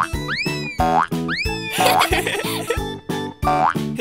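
Upbeat children's cartoon background music with a steady beat, with two quick rising-then-falling swooping sound effects in the first two seconds and a short burst of noise near the middle.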